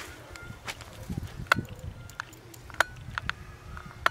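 Footsteps and movement on loose rubble and stones: a handful of sharp clicks and crunches spread through, over a low rumble.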